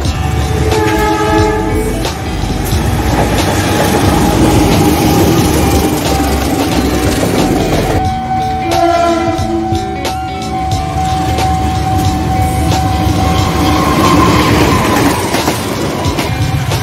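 Diesel locomotive-hauled passenger trains passing, with the locomotive horn sounding briefly about a second in and again more strongly from about 8 to 11 seconds. Underneath, a steady rumble of the train with the wheels clicking over the rail joints.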